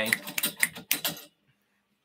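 Several sharp plastic clicks and rattles from a camera being unclipped and lifted off its overhead mount, stopping abruptly about a second and a quarter in.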